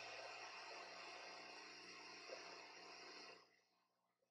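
Near silence: a faint, steady hiss of room tone that cuts off suddenly about three and a half seconds in.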